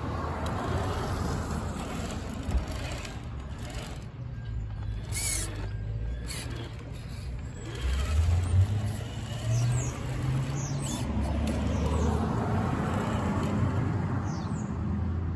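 Traxxas TRX-4 Sport RC crawler driving over concrete: the electric motor and geared drivetrain whine steadily with tyre noise, the level rising and falling as it speeds up and slows.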